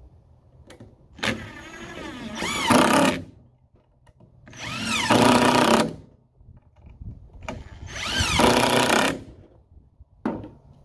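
DeWalt cordless impact driver driving three long screws into treated lumber, one after another. Each run starts with the motor whirring up in pitch and ends loudest as the impacts hammer the screw home.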